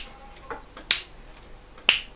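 Finger snaps counting in the tempo before the piano starts: two sharp snaps about a second apart, with a fainter click between them.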